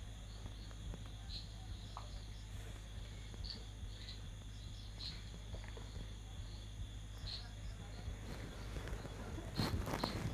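Quiet night ambience: insects chirping in short high calls every second or two over a steady low hum, with a brief rustle near the end.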